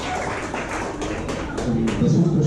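A handful of sharp, irregular taps over low background chatter, coming closer together in the second half.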